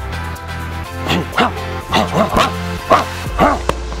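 Background music with a steady bass line, over which come about seven short, sharp vocal bursts in quick succession, shouts or grunts given with the strikes of a fast self-defence sequence.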